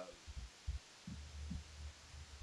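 Handling noise from a phone being moved: a few soft low thumps, then a low rumble from about a second in.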